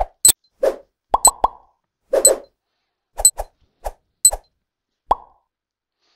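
A series of about a dozen short clicks and plops, irregularly spaced over the first five seconds, some sharp and bright, others duller and lower.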